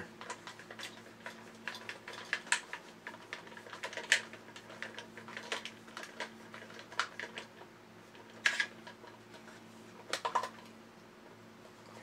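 Screwdriver tip and a small screw clicking and scraping irregularly inside a recessed screw hole in a hard plastic toy robot body, as the screw is worked into the hole.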